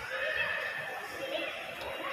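Indistinct voices of people in a busy mall, with one long, high-pitched, whinny-like vocal sound lasting about the first second.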